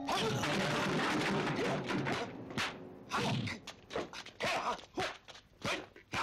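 Kung fu film fight sound effects: a dense burst of noise, then a quick run of short swishes and hits.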